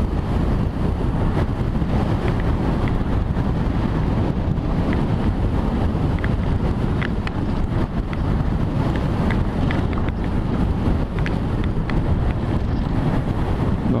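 Strong wind buffeting the microphone of a motorcycle riding on a loose gravel road, steady throughout, with the bike's engine and tyre noise beneath it and a scattering of faint ticks.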